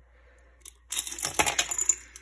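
Small rusted metal charms clinking against a glass jar and each other as they are worked out of its mouth. A quick run of bright, jingly clinks starts about a second in.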